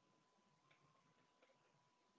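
Near silence: room tone with a faint steady high tone and two very faint clicks, one about two-thirds of a second in and one near the middle-end.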